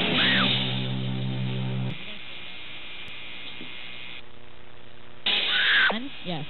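A rock band's final chord on electric guitar ringing out, then cut off sharply about two seconds in, leaving the steady hum of the amplifiers. Near the end comes a short loud burst of noise with a falling squeal.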